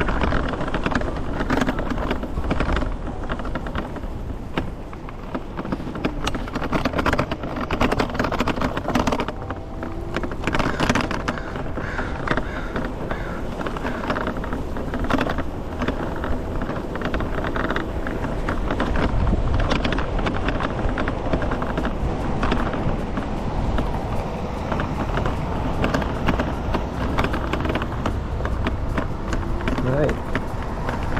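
Wind buffeting the camera microphone over the rumble and rattle of an electric scooter rolling over rough, wet pavement, with many small knocks from bumps in the road.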